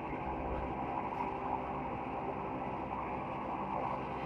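Industrial woodworking machine running steadily as a board feeds through it, a continuous hum of several tones with no distinct knocks or breaks.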